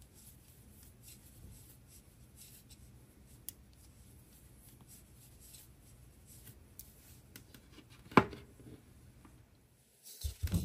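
Faint rustling and soft ticks of yarn being drawn through stitches on a large crochet hook while double crochets are worked, with one sharp knock about eight seconds in.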